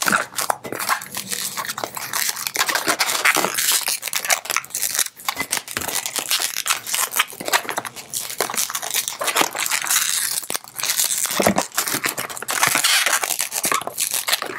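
Inflated latex modelling balloon (a 160) squeaking and rubbing in the hands as it is twisted into small bubbles and pinch twists: a dense, continuous run of short squeaks, creaks and crinkles.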